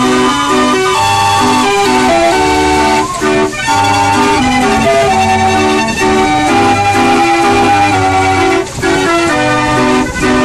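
Hand-cranked Carillon street organ playing a tune from its punched book music: pipes hold notes and chords over a pulsing bass. The music breaks off briefly about three seconds in and again shortly before the end.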